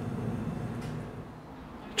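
Low, steady room noise in a quiet indoor space, with no distinct events, easing slightly quieter near the end.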